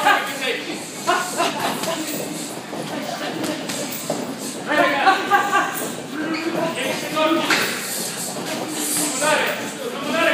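Indistinct voices calling out in bursts, with scattered knocks between them.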